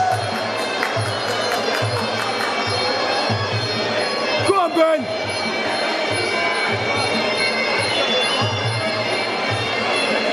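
Traditional Muay Thai sarama fight music: a reedy Thai oboe over a steady drum beat, with fast cymbal ticks that stop about three seconds in. Crowd voices run underneath, and a short loud shout rises above them about halfway through.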